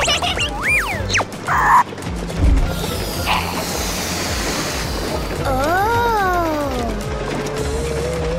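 Cartoon background music with sound effects: a thump about two and a half seconds in, then about two seconds of hissing air as a big red balloon inflates, and a tone that rises then falls near the end.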